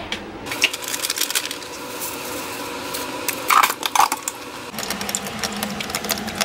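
Small clicks, knocks and clatter from a plastic drip coffee maker being handled as coffee is started, with a couple of louder knocks about midway.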